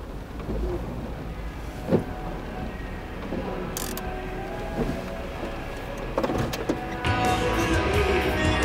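Car interior sound: a steady low engine and road rumble with a sharp click about two seconds in, under background music that swells about seven seconds in.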